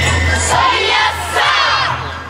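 Yosakoi dance music playing, with a loud group shout of many voices rising about halfway through as the music drops back.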